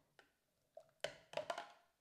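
Thermomix spatula knocking against the rim of the stainless steel mixing bowl: several sharp knocks in the second half, each with a short ring, after a faint click early.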